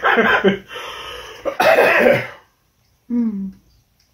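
Coughing set off by the heat of a very hot chili-pepper sauce: three harsh bursts in the first couple of seconds. A short voiced sound, falling in pitch, follows a moment later.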